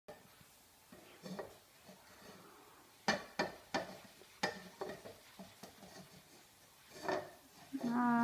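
Ceramic dishes clinking in a kitchen sink as a plate is washed by hand: a quick run of sharp clinks a few seconds in, then another clink near the end.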